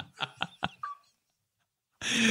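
A man laughing in a few short bursts, cutting off to silence about halfway through.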